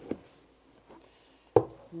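Cardboard MacBook Pro box being opened by hand: a couple of light knocks as the box is taken hold of, then the lid is lifted off and set down with one sharp knock on the wooden table about a second and a half in.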